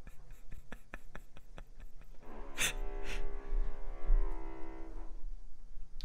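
Power drill: a quick run of sharp knocks, then the drill running at a steady pitch for about three seconds, from about two seconds in until near the end.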